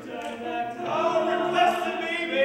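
Male a cappella quartet singing in close harmony, unaccompanied. The voices are quieter at first and swell back up about a second in.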